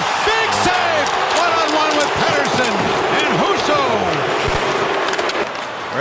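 Ice hockey arena crowd noise with scattered shouting voices, and sharp knocks of sticks and puck during a scramble in front of the net.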